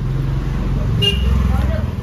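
Low rumble of road traffic, a vehicle's engine swelling louder about a second in as it passes, with faint talk over it.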